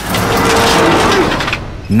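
Road bicycle and rider crashing and sliding across a gravel road, a loud scraping rush with a held tone partway through that stops about one and a half seconds in.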